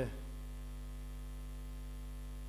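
Steady low electrical mains hum from the microphone and recording chain, unchanging throughout, with the tail of a man's drawn-out hesitation sound "eh" fading out right at the start.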